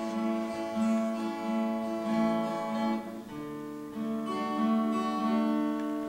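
Acoustic guitar playing a chordal introduction before the song begins, with the chord changing about three seconds in.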